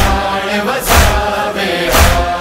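Voices chanting the nauha's refrain in long held notes, over a heavy beat that falls about once a second.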